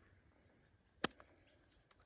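A push-on plastic cap pulled off a cardboard tube, coming free with one sharp click about a second in.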